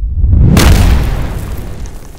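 Deep cinematic boom sound effect for a logo reveal. It swells to a peak about half a second in, then fades away slowly.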